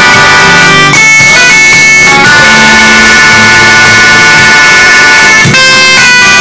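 Electronic keyboard playing a bolero: loud, long held chords that change about a second in, again around two seconds, and shortly before the end.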